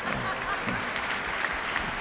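Large banquet audience applauding, a steady patter of many hands clapping, with a few voices in the crowd.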